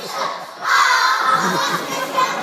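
A group of young children shouting together in a loud burst that starts suddenly about two-thirds of a second in, between sung lines of their song.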